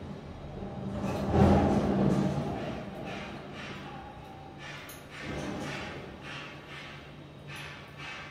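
A glass conical flask swirled by hand under a burette during an acid titration, giving a few short swishing, scraping noises over a steady low room hum. A louder swell of noise comes about a second in.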